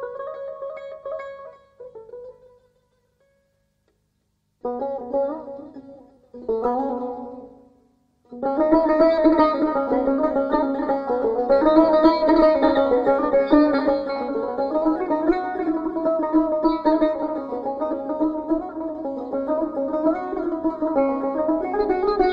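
Solo Persian plucked long-necked lute playing in the Afshari mode: a few short phrases separated by pauses, then from about eight seconds in a continuous run of quick notes.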